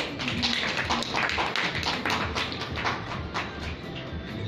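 Audience applauding: dense, irregular hand-clapping.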